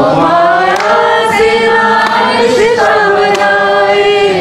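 A group of voices, women's among them, singing a Hindi devotional bhajan in long held notes.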